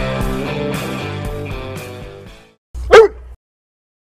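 Background rock music with guitar fades out, then a Chesapeake Bay Retriever gives one short bark about three seconds in, its pitch dropping quickly. The bark is the loudest sound.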